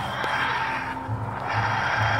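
TARDIS dematerialisation sound effect: a wheezing, groaning hum that swells and fades about twice a second as the police box departs.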